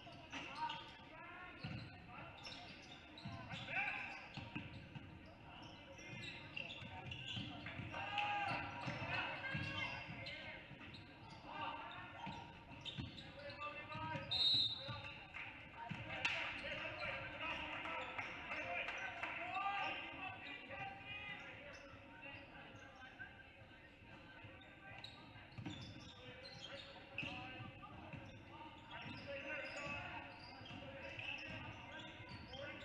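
Basketball bouncing on a hardwood gym court amid players' and spectators' voices, all echoing in the gym. A short whistle blast sounds about halfway through.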